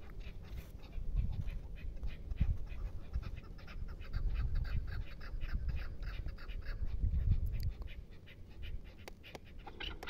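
Chukar partridges calling: a fast, steady run of clucking notes, several a second, over a low rumble.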